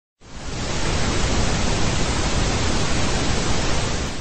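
Television static: a steady, loud hiss like an untuned analogue TV, starting just after the beginning.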